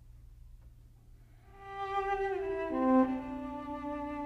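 Cello entering about a second and a half in after a near-silent start, playing a slow bowed melody of held notes that step downward in pitch.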